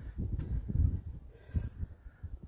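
Wind buffeting the microphone in uneven low gusts, with one faint click about half a second in.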